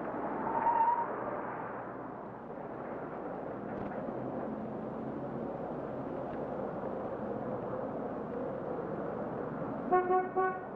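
Steady street traffic noise, with a brief rising tone about half a second in and a car horn tooting right at the end.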